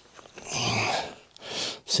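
A man breathing out hard, a short snort-like breath through the nose, then a shorter breath just before he speaks.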